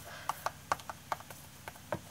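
Fingers tapping and rubbing on a canvas while pressing on flakes of gold foil, giving a scatter of faint small clicks and light rustles.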